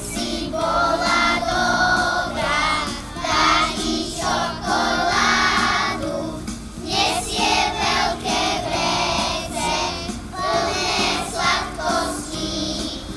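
A group of young kindergarten children singing a Christmas song together in sung phrases.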